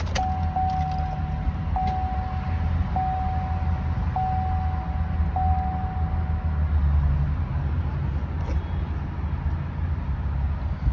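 Chevy Tahoe dashboard warning chime sounding five times back to back, each a steady held beep of about a second, stopping about seven seconds in; it goes with the cluster's rear-access-open warning. Underneath, the truck's 5.3-litre V8 idles as a steady low hum in the cabin.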